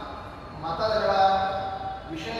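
A man's voice speaking into a microphone, delivering a discourse; only speech.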